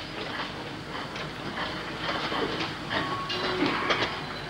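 Steady hiss of an old recording with faint, scattered small knocks and rustles.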